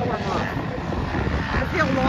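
Dirt bike engines revving up and down as they race around a motocross track, over a low rumble, mixed with voices.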